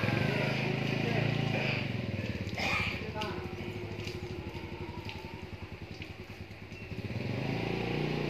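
A motorcycle engine running close by, a steady low putter that eases off in the second half and picks up again near the end.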